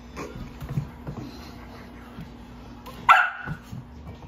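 Dalmatian puppy giving one sharp, high bark about three seconds in, during play with a cat. Softer thumps come before it.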